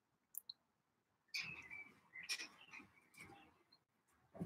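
Near silence broken by faint, irregular high chirps and clicks: two short blips about half a second in, then a scatter of them from just past a second on.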